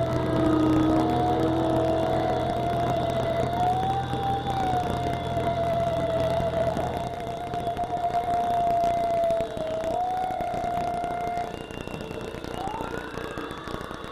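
Electric guitar feedback ringing out at the end of a song: one high, slightly wavering tone held for about eleven seconds, over a low drone that stops about halfway. Near the end, a few short rising squeals.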